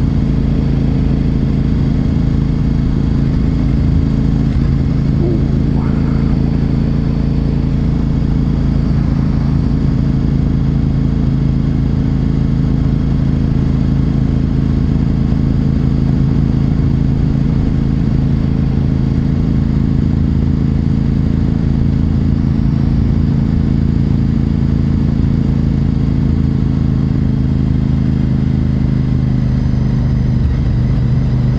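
Honda RC51's 1000cc V-twin engine running at a steady cruise, its note holding level throughout with no revving or gear changes.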